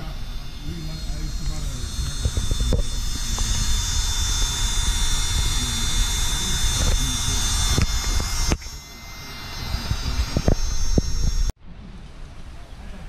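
Small electric air pump running with a steady high whine and rush of air as it inflates an air mattress. The sound breaks off abruptly twice, the second time near the end.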